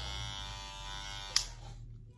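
Limural cordless hair clippers running with a steady electric buzz, then switched off with a sharp click about one and a half seconds in, the buzz dying away.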